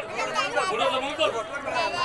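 Speech: a man's voice amplified through a microphone, with crowd chatter around it.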